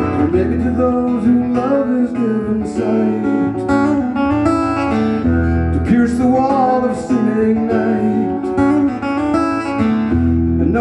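Acoustic guitar picked in an intricate pattern, with a man singing along.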